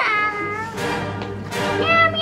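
Meowing sung as a tune, a Christmas song done in meows, with music playing along.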